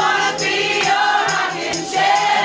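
A man and a woman singing together over a strummed acoustic guitar in a live band performance.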